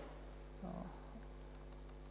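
Faint laptop keyboard typing, a quick run of key clicks in the second half, as a terminal command is entered. A steady electrical hum runs underneath, and a brief low sound comes a little over half a second in.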